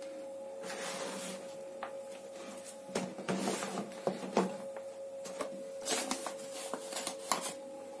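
Hands kneading soft, over-wet chapati dough in a plastic basin: irregular soft, sticky handling noises as the dough is pressed, pulled and turned.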